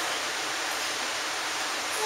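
Steady, even hiss of room and recording noise with no distinct event, heard in a short pause between spoken phrases.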